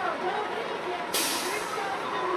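Air brakes of a utility bucket truck releasing with a sudden sharp hiss about a second in, lasting just under a second, over crowd chatter.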